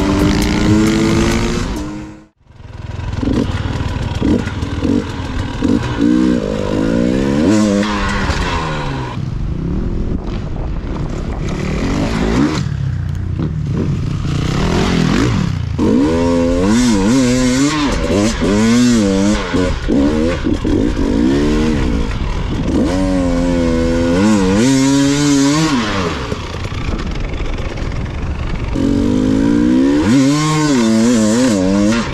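KTM enduro dirt bike's engine revving up and down over and over as it rides through soft sand, with a brief break in the sound about two seconds in.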